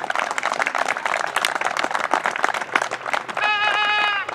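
A crowd of spectators clapping. Near the end a horn sounds once, a short steady blast.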